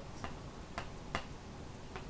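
Four short, sharp clicks at uneven intervals over a faint hiss, the two loudest less than half a second apart near the middle.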